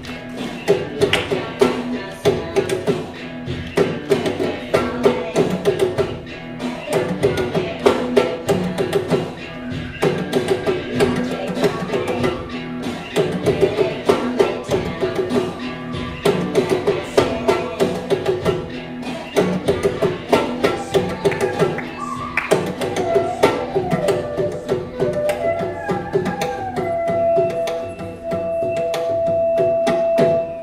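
Mridangam played solo in fast, dense rhythmic patterns, the strokes ringing at the drum's steady tuned pitch. In the last several seconds a sustained melodic tone that glides in pitch and then holds joins over the drumming.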